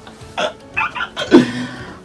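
A few short non-word vocal sounds from a person, the loudest about a second and a quarter in, over background music.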